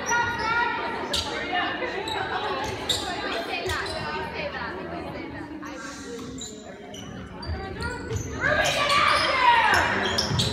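Indoor basketball game in a large gym: a basketball bouncing on the court with scattered knocks, under spectators' overlapping voices that grow louder near the end.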